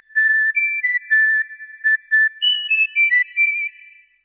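A short whistled jingle: a melody of about a dozen clear notes that steps up and down, climbs higher in its second half, then fades out near the end.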